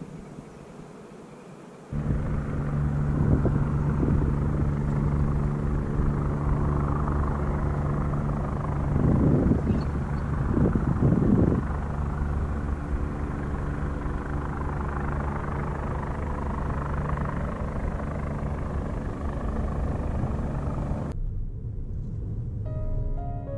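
A steady, low engine drone at a fixed pitch starts abruptly about two seconds in. It swells louder a few times around the middle and stops suddenly shortly before the end.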